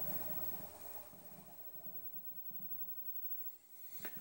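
RCA SJT400 CED videodisc player winding down after its reject button is pressed, a faint mechanical sound that fades to near silence by about halfway through.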